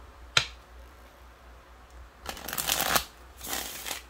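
A deck of tarot cards being shuffled by hand: a single sharp tap about half a second in, then two bursts of shuffling, each under a second long, near the end.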